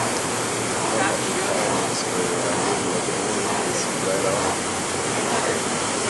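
Steady rushing hiss of a ski ergometer's fan flywheel as cable handles are pulled, with faint voices underneath.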